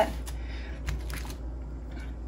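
Aluminium foil crinkling faintly a few times as a hand presses on and lets go of a foil-wrapped parcel.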